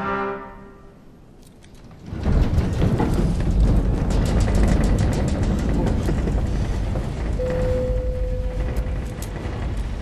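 A sustained musical chord fades out in the first second. About two seconds in, a loud low rumble with rattling and clatter starts and keeps going: an airliner cabin shaking in sudden turbulence. A short steady tone sounds near the end.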